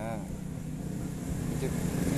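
An engine idling steadily, a low even hum.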